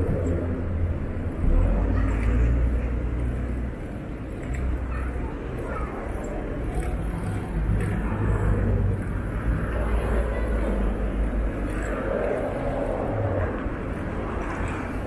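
City street traffic heard from a moving bicycle: cars and taxis driving close by, with a heavy low rumble of wind on the small camera's microphone that rises and falls.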